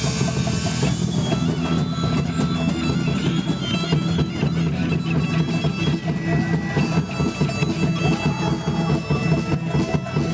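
Live rock band playing: electric guitars and bass guitar over drums.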